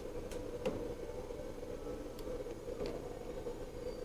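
Steady indoor background hum with a few faint light clicks and taps, as a packaged torpedo level is held against metal to test whether its magnet grips.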